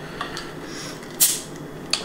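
Beer bottle being opened: a faint click, then a short hiss of escaping carbonation about a second in, and another small click near the end.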